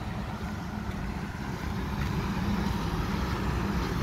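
Road traffic: a steady low rumble that slowly grows louder.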